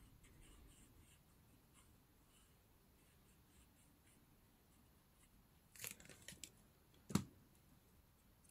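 Near silence with faint handling clicks about six seconds in, then a single sharper tap about seven seconds in as a plastic glue bottle is set down on the table.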